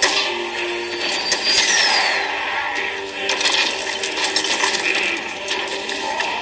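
Film sound effects of a giant robot's metal parts shifting: rapid mechanical clicks, clanks and ratcheting, with a short falling whine about two seconds in.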